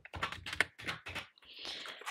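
Keys of a wooden desktop calculator pressed in a quick run of about seven clicks, then a soft paper rustle near the end as a cash envelope in a ring binder is handled.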